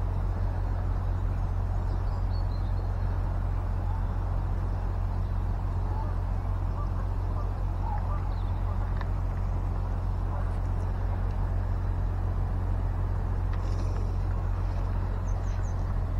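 Steady low outdoor rumble with a hiss over it, unbroken throughout, and a few faint short chirps near the end.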